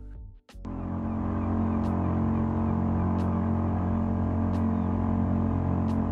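Steady low drone of a running motor, even and unchanging, with faint ticks about every second and a bit. It cuts in about half a second in after a brief silence.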